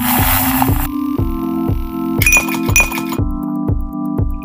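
Background electronic music with a steady beat, with a short hiss at the start and ice cubes clinking against a drinking glass about two seconds in, ringing a couple of times.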